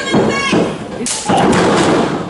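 Wrestlers crashing down onto a wrestling ring's mat: a sudden loud thud about a second in, with the ring ringing on after it.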